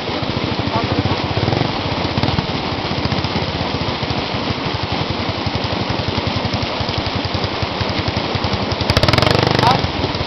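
Dirt bike engine idling with a rapid, even putter, getting louder for about a second near the end.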